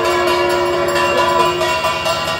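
Procession music: a wind instrument holding a long, steady, horn-like note with brief slides in pitch, over fast, even drumming.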